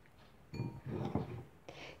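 A metal teaspoon scraping seeds and juicy pulp out of the seed pockets of a cut tomato into a bowl: soft, wet scraping starting about half a second in.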